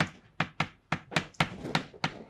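Chalk knocking against a blackboard while an equation is written: a quick, irregular run of sharp taps, about eight in two seconds.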